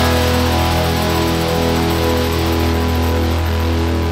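Rock music: one held electric guitar chord rings out and slowly fades.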